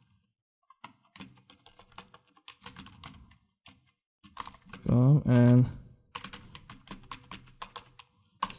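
Typing on a computer keyboard: two runs of quick keystrokes. Between them, about five seconds in, a short loud burst of a man's voice.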